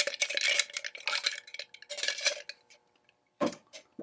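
Ice being stirred with a spoon in a stainless steel shaker tin: rapid clinking of ice against metal with the tin ringing, chilling and diluting the gin, lemon juice and sugar. The stirring stops about two and a half seconds in, followed by a couple of light knocks near the end.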